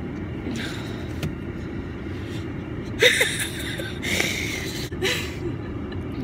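Car engine idling, heard from inside the cabin as a steady low rumble. A few short breathy rustles come about halfway through.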